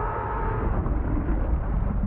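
Deep, steady rumble from a TV show's sound effects, with a few faint held tones above it, the kind of rumble that goes with a giant creature or a big blast on screen.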